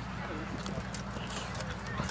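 Horse's hooves striking the dirt arena at a walk, a few irregular clip-clop steps, under faint voices.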